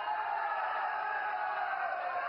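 A large rally crowd cheering in one held, drawn-out shout that sinks slowly in pitch.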